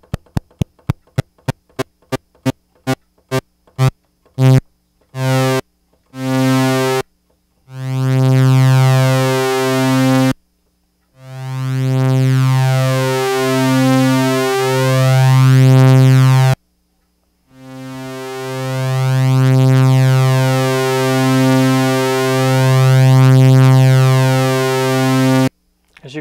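Minimoog synthesizer repeating one low note, its oscillators beating slightly against each other, while the loudness contour's attack time is turned up. It starts as a run of short clicks, a few a second, that grow into longer notes; from about eight seconds in come long held notes that swell in slowly rather than starting at once, showing that the attack control works.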